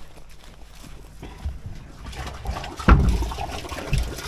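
Footsteps and rustling through garden ground cover, then a sharp knock about three seconds in as the plastic lid of a septic tank is pulled open, followed by handling noise.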